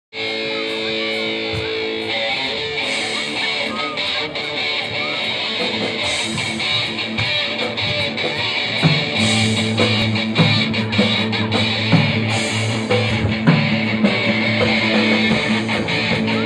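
Live rock band playing on electric guitars with drums: a held chord opens, then a guitar riff, and heavier low notes with strong regular accents come in about nine seconds in.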